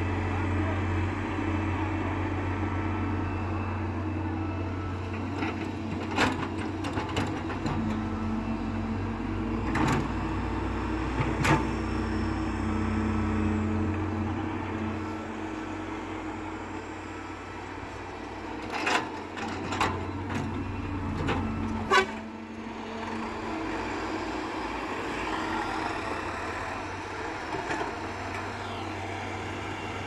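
Diesel engines of a wheeled excavator and farm tractors running steadily, with several sharp knocks as the excavator's bucket digs and dumps sand into a trolley.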